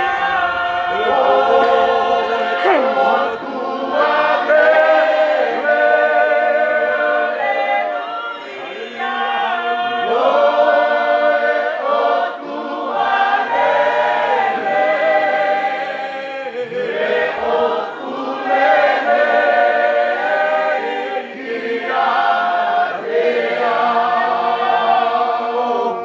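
A choir of mixed voices singing a slow hymn unaccompanied, with a man's voice leading at the microphone.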